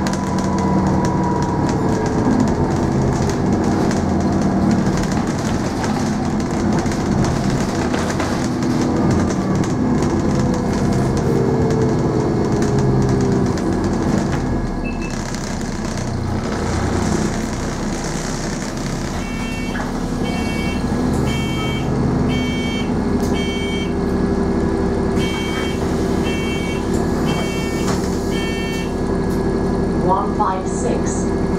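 Inside the lower deck of an Alexander Dennis Enviro400 double-decker bus: the engine and drivetrain run with a whine that glides up and down as the bus slows for a stop, then settles steady. In the last ten seconds a run of about ten high beeps sounds about once a second in two runs: the bus's door warning beeps.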